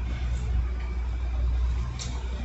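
Steady low rumble of motor traffic, an engine running somewhere along the street.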